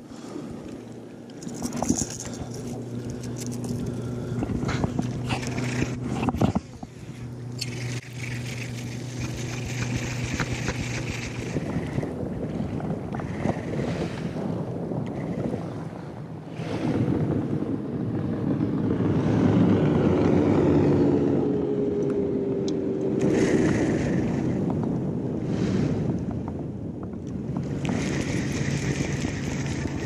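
Bass boat's electric trolling motor humming in spells, starting and stopping several times, under wind noise on the microphone.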